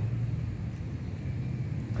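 A machine running with a steady low hum.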